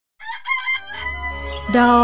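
Intro jingle for a radio show. It opens with a few short clucking notes over a music bed with a steady low drone. About a second and three-quarters in, a loud rooster-style crow rises and holds, sung as the start of the show's name.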